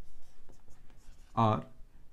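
Marker pen writing on a whiteboard: a few short, faint scraping strokes, followed by a man's voice saying a single word.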